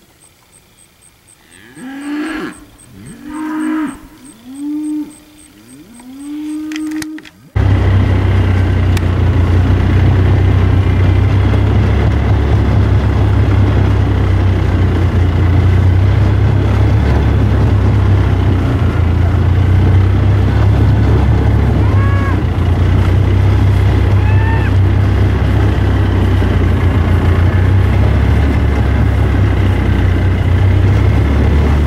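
Steers mooing: four calls in quick succession, each rising and falling in pitch. About seven and a half seconds in, a loud steady low rumble starts suddenly and runs on, covering the rest.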